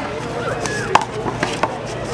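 One-wall handball rally: about four sharp smacks of a hand hitting the rubber ball and the ball striking the wall, the loudest about a second in.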